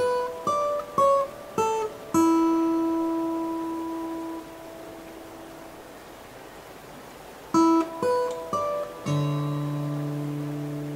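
Slow guitar music: single plucked notes in a short phrase, the last one left to ring out. After a quieter pause of about three seconds, a second phrase of plucked notes ends on a held chord.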